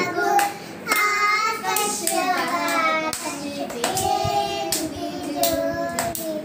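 Young children singing a song together while clapping their hands along with it.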